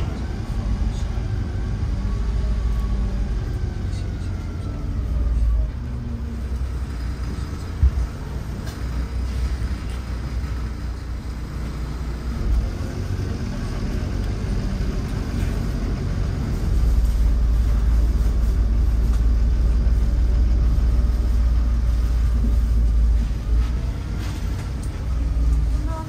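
Wright Eclipse 2 single-deck diesel bus heard from the passenger saloon while under way: a steady low engine and road rumble that swells louder in stretches, with a faint whine rising and falling above it. A single sharp knock sounds about eight seconds in.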